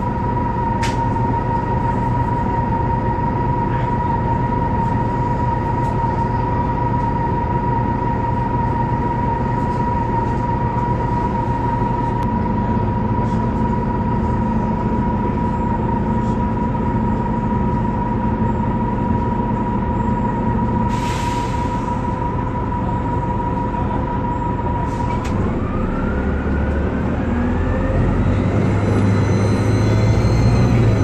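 The Detroit Diesel Series 50G natural-gas engine of a 2004 Orion VII CNG transit bus, running steadily with a constant whine over its rumble. A short hiss comes about two-thirds of the way through. Near the end the whine rises in pitch and the engine grows louder as the bus accelerates.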